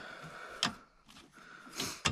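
A seatbelt's small black plastic stopper button clicks once against the shoulder-belt guide loop about half a second in, and a short rustle follows near the end. The owner guesses the stopper sits too far up the red webbing, so it hits the guide and the excess slack cannot retract.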